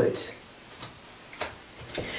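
Quiet room between spoken phrases, broken by two faint, short ticks a little over half a second apart.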